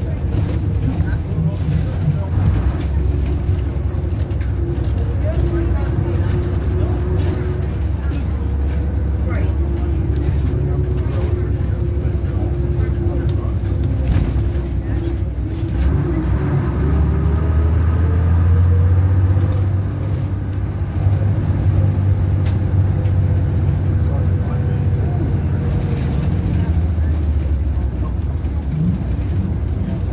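Leyland Panther rear-engined single-deck bus running on the road, its diesel engine drone heard from inside the saloon. The engine note rises as it pulls between about 16 and 19 seconds in, then drops off briefly, as at a gear change, before running on.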